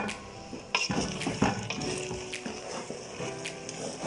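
Spatula stirring okra frying in palm oil in a metal pot: scraping with several sharp knocks against the pot over a low frying sizzle.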